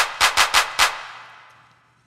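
An electronic clap sample is struck about five times in quick succession in the first second. It plays through Fruity Reverb on a send channel, and its reverb tail fades out over about a second. The reverb's low cut is raised to around 500 Hz, so the tail is thin and lacks low end.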